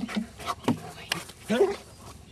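German Shepherd's paws knocking and clattering on wooden cable spools as it walks across them, several sharp knocks. A brief voice that rises and falls comes about one and a half seconds in.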